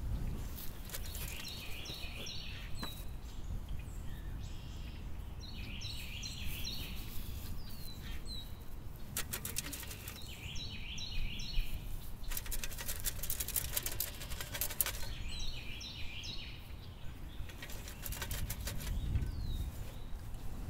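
A songbird singing the same short phrase four times, roughly every four to five seconds, over a low wind rumble. In between, two spells of fast scratchy rattling from dirt being sifted through a screen over a buried trap.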